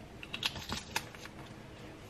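A few light clicks from a metal garlic press as it is opened and handled, in the first second.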